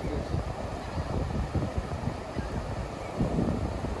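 Wind buffeting the microphone in gusts over the wash of breaking surf.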